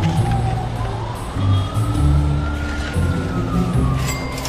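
A wailing siren, its pitch sliding slowly up and then back down in one long sweep, over background music with a deep bass line.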